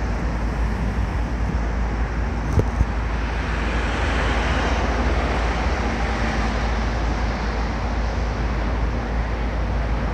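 Steady outdoor noise: wind on the microphone, a constant low rumble, over road traffic that swells slightly midway. Two brief clicks a little after two and a half seconds.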